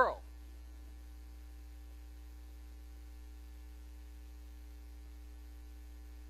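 Steady low electrical hum, mains hum on the recording, running unchanged with a faint steady tone above it.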